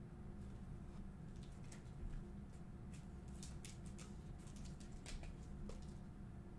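Faint scattered clicks and light scrapes of hands handling trading cards and a clear plastic card holder, over a low steady hum.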